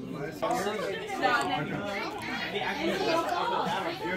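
Many people talking at once: overlapping chatter of a room full of party guests.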